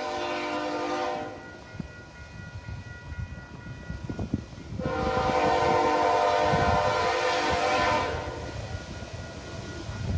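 Approaching freight locomotive's multi-chime air horn sounding for a grade crossing: a blast that ends about a second in, then after a pause a second long blast of about three seconds. This is the warning the train sounds as it nears the crossing. Under the horn, the crossing's warning bell rings steadily.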